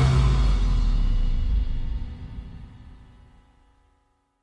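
Background music ending: a final low note is held and fades out to silence over the last two seconds or so.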